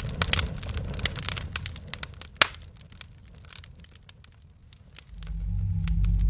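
Campfire crackling, with irregular sharp snaps over a low rumble and one louder snap about halfway through, thinning out toward the end. A low music drone comes in near the end.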